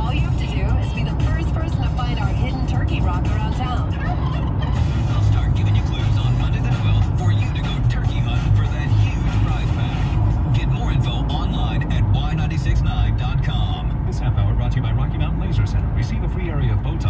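Steady low rumble of engine and road noise inside a truck cab at highway speed, with a radio playing talk and music underneath.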